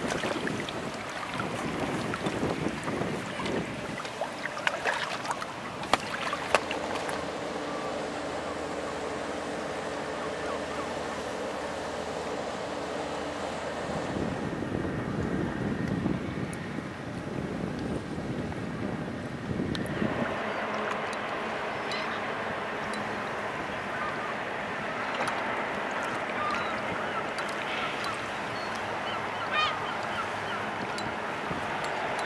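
Wind on the microphone and choppy water lapping at the bank, with a few sharp knocks about five seconds in and a low steady hum for several seconds in the middle.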